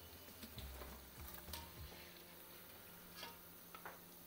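A few light metal clicks of a wire skimmer knocking against the aluminium karahi and the steel bowl while fried pakoras are scooped out of the oil, at a low level.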